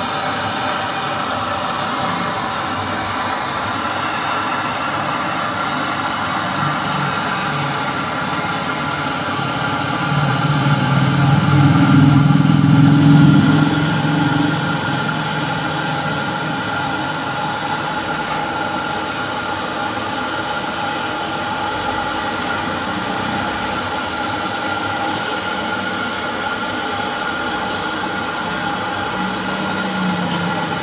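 Steady roar of a gas stove burner under an iron-plate wok that is being heated to burn off its paint coating for seasoning. The sound swells louder and deeper for a few seconds around the middle.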